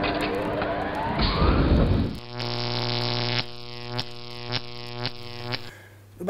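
Channel intro jingle of music and sound effects: a loud noisy swell with a rising glide over the first two seconds, then a sustained electronic chord with a beat about twice a second that cuts off shortly before the end.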